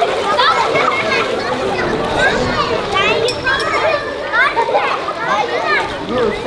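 A crowd of young children talking and shouting at once, many high voices overlapping without a break.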